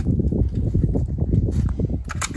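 Low, irregular rumble of wind buffeting the microphone outdoors, with faint knocks from handling a submachine gun before firing; no shots yet.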